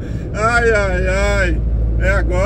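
A drawn-out voice lasting about a second, over the steady low drone of a truck's engine and tyre noise heard from inside the cab.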